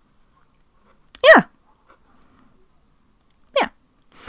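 A dog giving two short yelps, each sliding down in pitch: a loud one about a second in and a shorter, fainter one near the end.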